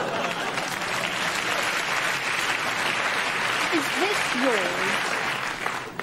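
Studio audience laughing and applauding in one continuous wash of crowd noise that dies down near the end. A short vocal sound with sliding pitch comes about four seconds in.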